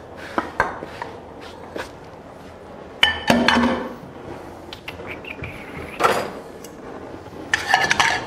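Metal tongs and a stainless steel skillet clinking and clattering as mushrooms are handled in the pan: a scatter of sharp clinks, the loudest a ringing clank about three seconds in.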